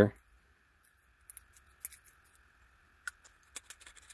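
Faint, scattered small clicks and scrapes, starting about a second in, as a thin 3D-printed plastic washer is pressed onto the metal barrel of a telescope eyepiece.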